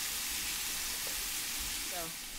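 Seasoned lamb loin chops sizzling steadily in hot olive oil in a pan as they sear.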